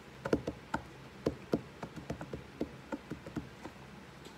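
Clear plastic fork tapping and clicking against the inside of a Maruchan Fire Bowl ramen cup while the noodles are stirred: a quick, irregular series of about fifteen light taps.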